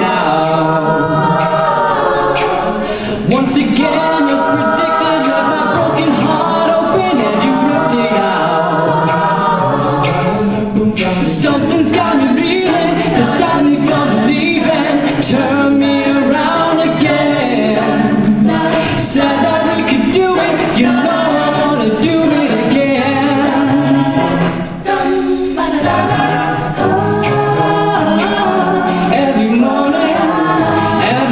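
Mixed-voice a cappella group singing through microphones: several harmonised voices with a steady beat of sharp clicks running underneath.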